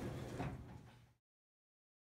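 Elevator's sliding doors settling shut with a light knock, over a low steady hum. The sound cuts off abruptly just over a second in.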